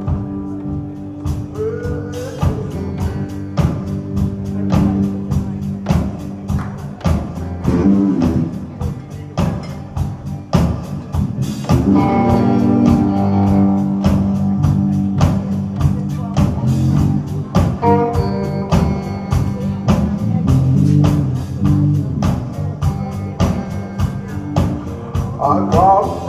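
Live blues band playing: electric guitar and bass guitar over a drum kit keeping a steady beat, with bent guitar notes.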